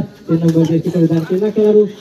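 A kabaddi raider's chant: a man repeating 'kabaddi' rapidly on one steady pitch in a single breath, in about five quick stretches, breaking off shortly before the end as the defenders close in.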